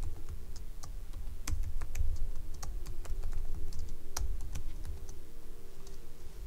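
Typing on a computer keyboard: irregular, quick key clicks as a terminal command is typed out, over a low steady hum.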